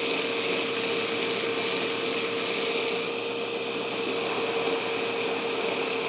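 Belt grinder running with the steel shank of a hardy fuller pressed against the abrasive belt, grinding it down to fit inside square tubing: a steady machine tone under a grinding hiss that swells and eases, dropping away briefly about three seconds in.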